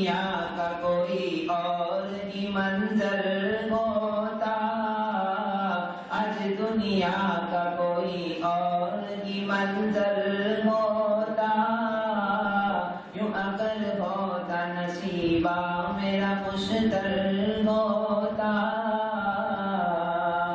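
A solo male voice chanting a melodic religious recitation, unaccompanied, in long held phrases with short pauses for breath.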